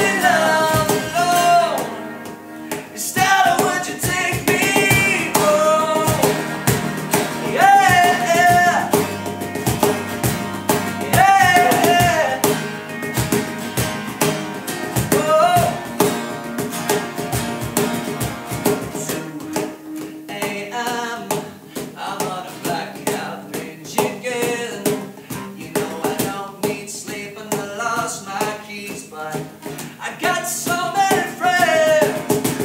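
Acoustic band performance: a male lead vocal over two strummed acoustic guitars, a cajón keeping the beat and a plugged-in bass guitar. The sung phrases stand out most in the first half, after which the instruments carry more of the sound.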